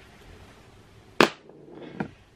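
A single sharp click or snap about a second in, over quiet room tone.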